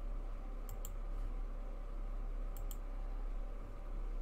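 A computer mouse double-clicking twice, once just under a second in and again about two and a half seconds in, over a steady low hum.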